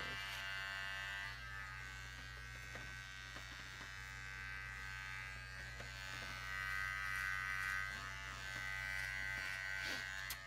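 Electric hair clippers buzzing steadily as they trim hair, a little louder between about six and eight seconds in.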